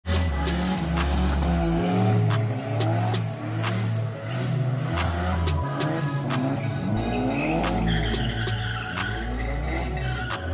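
Mitsubishi Starion's 2.6-litre G54B turbo four revving up and down with tyres squealing as the car spins donuts, under music with a steady beat.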